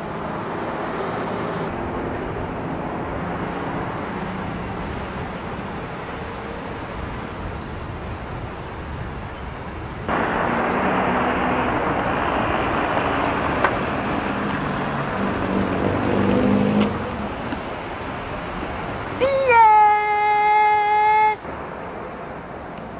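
Street ambience with traffic noise, recorded on a camcorder's built-in microphone, with a jump in level partway through where the tape is cut. Near the end a loud held pitched sound lasts about two seconds and cuts off suddenly.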